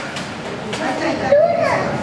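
Children's voices, one of them calling out loudly about a second and a half in, over the steady noise of a twin-turbine MBB Bo 105 helicopter hovering just after lift-off.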